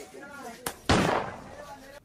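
Faint background voices, then a sudden sharp burst of noise about a second in that fades over half a second.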